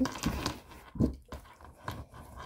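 Objects being handled close to the microphone: three short knocks with light rustling between them.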